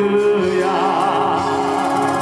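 A man singing a Christian worship song into a microphone, his voice wavering on held notes, over steady instrumental accompaniment.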